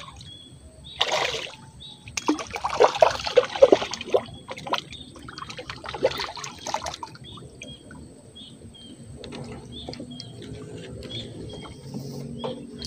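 A hooked mullet splashing at the water's surface as it is pulled in on a pole line, in several splashy bursts over the first seven seconds. Short high bird chirps repeat in the quieter second half.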